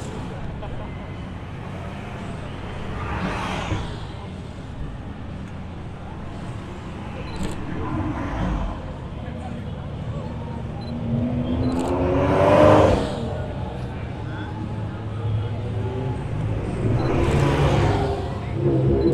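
Car engines running at low revs in a slow procession, with one engine revved up and back down about twelve seconds in, the loudest moment. The engine sound swells again near the end as another car draws near.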